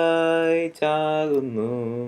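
A man singing a Malayalam Christian hymn unaccompanied, in long held notes: one sustained note, a short break, then a note that slides down in pitch near the end.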